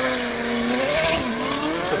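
Supercar engine and exhaust revving. Its pitch holds, dips about a second in, then climbs again.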